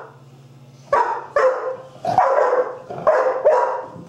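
A dog barking in play: a run of about five barks in quick succession, starting about a second in.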